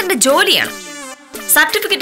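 A woman's voice speaking animatedly, rising and falling in pitch, with a brief high buzzing sound about halfway through.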